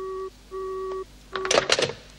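Telephone busy or disconnect tone heard from the handset: a low steady beep repeating about every 0.7 s, the sign that the other party has hung up. It stops about a second and a half in, and a short burst of another sound follows.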